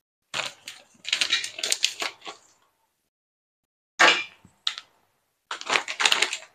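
Clear plastic bag of dried salted fish crinkling as it is handled, in three spells of crackling: for the first two seconds or so, again about four seconds in, and just before the end.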